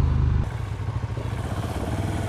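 KTM 1290 Super Duke's V-twin engine running under way, then about half a second in an abrupt change to a KTM 690 SMC R's single-cylinder engine running steadily at a lower level, with road and wind hiss.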